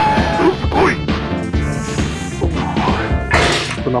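Background music with two sudden noisy hits laid over it, one about a second in and one past three seconds.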